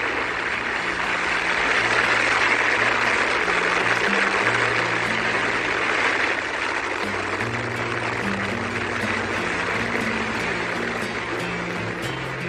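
A rocket lifting off: a loud, steady rushing roar, mixed with background music of low held notes that shift in pitch every second or two.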